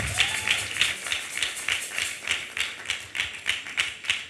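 Audience clapping in time, a steady rhythm of about three claps a second, welcoming a speaker on stage.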